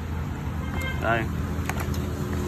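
Steady low engine hum in the background, with a few short clicks near the end.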